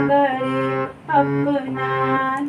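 Harmonium playing the melody in sustained notes, with a voice singing the sargam note names along with it ("ga"). One held note breaks off about a second in and the next begins right after.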